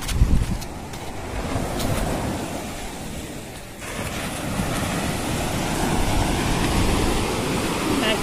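Surf washing steadily onto a sandy beach, with wind buffeting the microphone in low gusts, strongest near the start. The sound changes abruptly a little before four seconds in.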